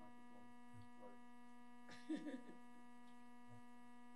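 Steady electrical mains hum, a constant buzz made of several fixed tones, in a quiet room. A brief faint sound comes about two seconds in.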